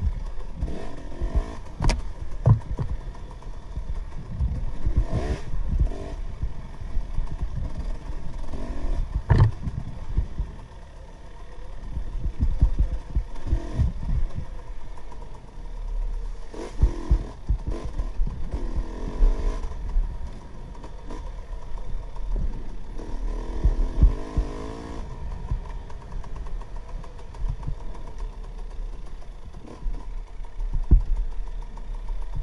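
KTM 300 XC-W two-stroke single-cylinder dirt bike engine revving up and down under way, with frequent low thumps and rattles from the bike over the rough trail.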